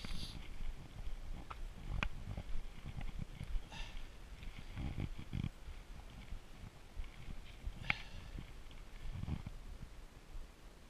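Camera carried by a person walking outdoors: irregular soft thumps and bumps of footsteps and handling, a couple of sharp clicks, and two short breathy hisses.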